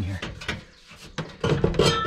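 A man's voice, speaking briefly at the start and again in the second half, with a quieter stretch between.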